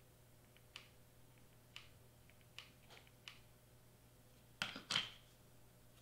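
Small handling clicks from a hot glue gun at work on a foam craft piece, a few light ticks spread over the first three seconds. Near the end come two louder plastic clacks close together as the glue gun is set back into its stand.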